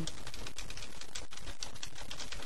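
Typing on a keyboard: a rapid, uneven run of key clicks.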